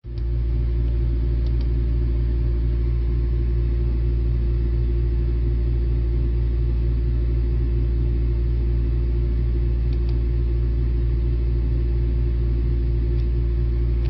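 Steady, loud low hum that cuts off suddenly at the end, with a few faint clicks: two about a second and a half in, two about ten seconds in, and one near the end.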